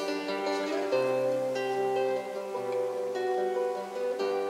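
Solo acoustic guitar playing a slow instrumental introduction, plucked notes and chords ringing on, with a deeper bass note coming in about a second in.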